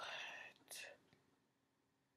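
A woman's voice trailing off in a breathy whisper, with a short breath or whispered sound just under a second in, then near silence: room tone.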